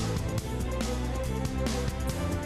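Television programme theme music with a steady drum beat and sustained notes over the opening titles.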